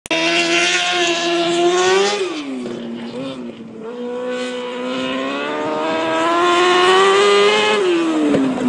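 Micro sprint car engine running hard around a dirt oval: the revs climb, drop sharply about two seconds in as it lifts off, then build steadily again and grow louder as the car comes near, easing off again right at the end.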